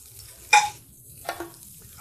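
A metal slotted spoon scraping and clinking against an enamelled pot as seared chicken pieces are lifted out, with chicken fat sizzling faintly in the pan. There is one sharp clink about half a second in and a softer one just past a second.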